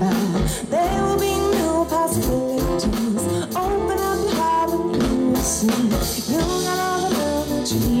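Live band music: a woman singing lead over keyboards, bass and drums.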